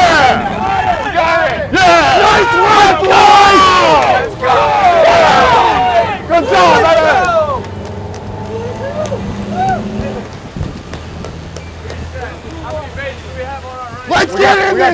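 Several men shouting and whooping in excitement for about seven and a half seconds. Then it drops to a lower level, with the boat's engines humming steadily underneath.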